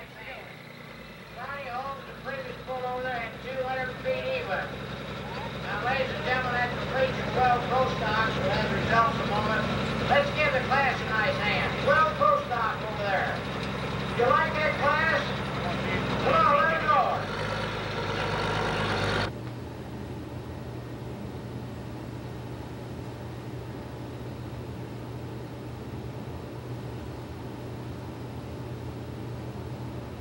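International diesel pulling tractor idling at the line, with people talking over it. About two-thirds of the way through, the sound cuts off abruptly to a steady low hum.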